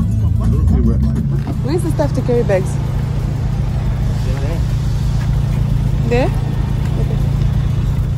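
Steady low hum of a car engine running, with music playing and a few short spoken words over it.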